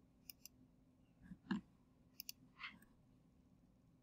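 Faint computer mouse clicks: a quick pair near the start and another quick pair a little past halfway. A soft knock about one and a half seconds in is the loudest sound, over a faint steady hum.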